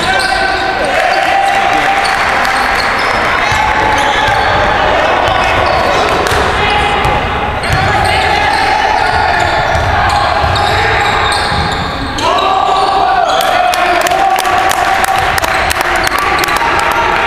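Indoor basketball game: a ball bouncing on the hardwood court and sharp knocks and clicks from play, under loud, sustained raised voices from players and spectators, all echoing in the gym.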